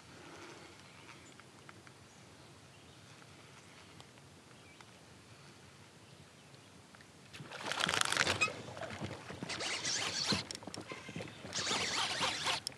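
Faint still-lake ambience, then from about seven seconds in, repeated bursts of splashing as a bass hooked on the topwater frog thrashes at the surface while being brought to the kayak.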